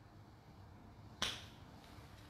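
A single sharp click about a second in, over faint room tone.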